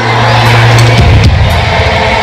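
Live pop band heard through an arena's sound system, recorded from far back in the audience: a held bass note, then a heavier low hit about a second in, under a dense wash of crowd noise.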